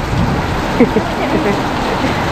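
Heavy rain pouring down, a steady dense hiss of rain falling on the ground and surfaces.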